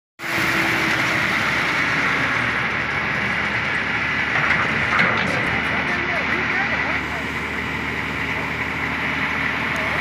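Diesel engine of a heavy-haul tractor unit running steadily under load as it slowly pulls an oversized cargo on a multi-axle trailer, with a continuous road and traffic hum.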